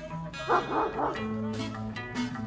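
A dog barks in a short burst about half a second in, over background acoustic guitar music.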